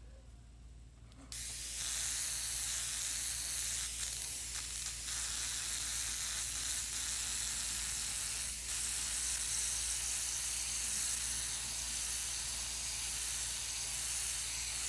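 Gravity-feed airbrush spraying white acrylic paint: a steady hiss of air and paint that starts about a second in and runs on unbroken.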